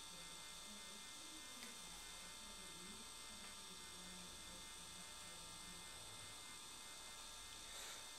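Very quiet room tone with a steady electrical hum and whine.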